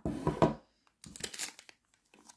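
Clear plastic bag of nail strips crinkling as it is handled, in two bursts: a louder one at the start and a lighter, higher rustle about a second in.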